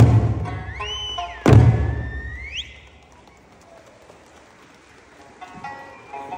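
Eisa large barrel drums struck twice, about a second and a half apart, with a high whistle sliding up and down over them. The sound then drops quieter before the accompanying music faintly returns near the end.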